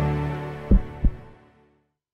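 The end of an electronic logo jingle: a sustained low synth chord fading out, with two deep bass thumps about a third of a second apart near the middle, like a heartbeat.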